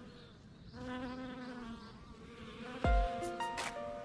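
Small bees buzzing in flight as they forage on white clover, a steady hum that fades briefly and swells again; the bees are taken for native Korean honeybees. About three seconds in, background music with struck notes and deep beats comes in over it.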